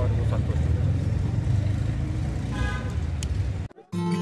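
Street traffic: a steady low rumble of passing vehicles, with a vehicle horn sounding briefly about two and a half seconds in. The sound cuts off suddenly just before the end.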